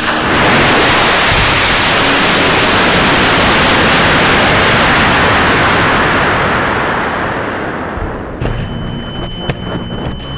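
Aerotech G53 rocket motor firing, heard through the rocket's on-board camera, starting suddenly as a loud, even rushing noise that carries on as air rushes past during the climb and slowly fades. Near the end the rush drops away, leaving scattered clicks, a faint steady high tone and a sharp pop from the ejection charge.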